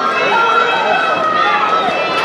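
A crowd of spectators yelling and shouting over one another, several voices at once with some drawn-out yells.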